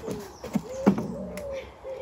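Footsteps knocking on the planks of a wooden footbridge, a few hollow steps under half a second apart, with a bird calling over them.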